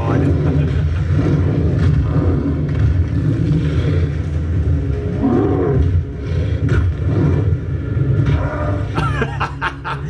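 Action-film fight soundtrack: a constant deep rumble with roars as the Hulk fights, and a man's voice breaking in near the end.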